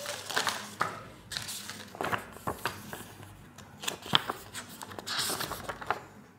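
Paper rustling and crinkling, with scattered light clicks and taps, as a paper instruction manual is picked up and its pages are handled.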